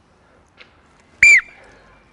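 One short, loud blast on a coach's whistle, a steady high tone that dips as it stops, about a second in: the signal for players to move into another zone.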